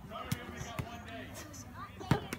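Padded practice weapons knocking against shields and each other in a group melee: several scattered dull thuds, with children's voices calling in the background.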